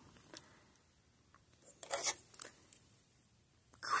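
Fingers rubbing and rustling through the fibres of a wig near its cap, with a couple of brief rustles about two seconds in and a few faint clicks before them.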